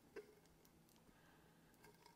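Near silence: room tone with a few faint clicks, the loudest just after the start, from fingers pressing heat tape onto paper wrapped around a tumbler.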